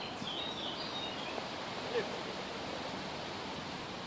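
Steady outdoor background noise with a few high bird chirps in the first second, and one brief short sound about two seconds in.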